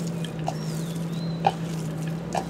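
Raw pork mince being mixed by hand in a plastic bowl: soft squelching with two sharper wet slaps, about half a second in and, louder, about a second and a half in. Under it runs a steady low hum, with a few faint high gliding chirps.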